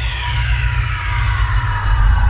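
Electronic sci-fi sound effect: a cluster of falling pitched sweeps over a deep, pulsing rumble, with a few steady high tones above it.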